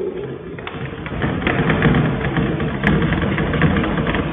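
Chalk writing on a blackboard, short scratchy strokes, over a steady low hum that grows stronger about a second in.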